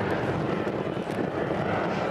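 Learjet in flight during an aerobatic pass, its jet engines making a steady rushing noise with a faint low hum under it.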